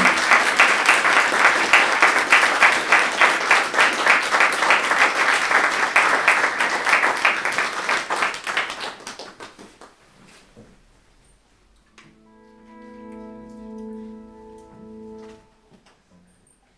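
Small audience applauding, dying away after about nine seconds. A few seconds later a sustained electric guitar tone rings through the amplifier, swelling and fading over about three seconds.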